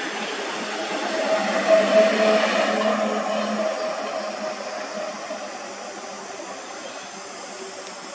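A motor vehicle's engine passing by: a steady hum that grows louder over the first two seconds, then slowly fades away.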